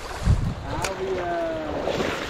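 Shallow river current running over stones, with wind buffeting the microphone in a loud low thump about a quarter second in and a sharp click just before the middle.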